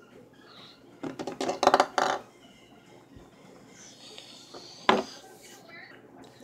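Clatter of a plastic toy house and gummy candies knocking on a tabletop, in a cluster about a second in, then one sharp knock near five seconds.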